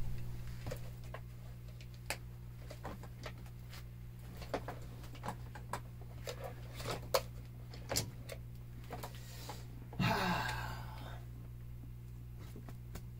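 Steady electrical mains hum from a powered-up organ setup, with scattered small clicks and knocks as someone settles at the keyboard. A short rushing noise comes about ten seconds in, and no music is playing yet.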